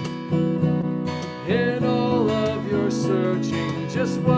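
Acoustic guitar strummed in a gentle song, with a gliding melody line over it from about a second and a half in.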